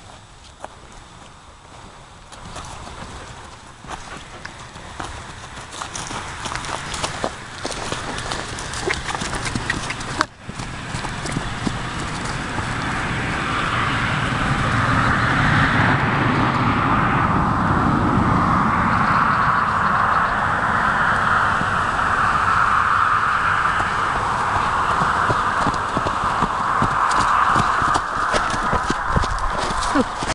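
Hoofbeats of a horse being led in hand on dry grass. About halfway through, a loud steady rushing noise takes over.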